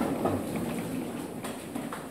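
A congregation getting to its feet: chairs scraping and feet shuffling, a scatter of small irregular knocks and rustles.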